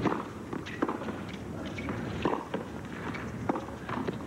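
Tennis rally on a hard court: sharp racket-on-ball strikes and ball bounces, about a second apart.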